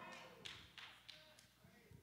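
Near silence: room tone in a large room during a pause, with a few faint short taps.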